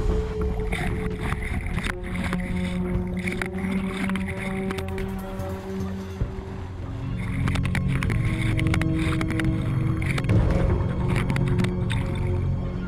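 Dramatic documentary score with long held low notes, laid over churning, splashing water as a great white shark thrashes at the surface biting a rubber seal decoy. There are sharp splashes and knocks about two seconds in and through the last few seconds.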